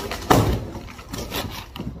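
Cardboard boxes and packing paper rustling and scraping as an inner cardboard box is pulled out of an outer one, with a sudden loud scrape about a third of a second in and scattered smaller knocks after it.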